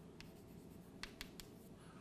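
Chalk writing on a chalkboard, faint: a few light taps and scratches of the chalk, three quick ones close together about a second in.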